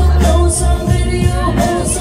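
A song over a loudspeaker system with a heavy, pulsing bass beat, and a woman singing live into a microphone over the backing track.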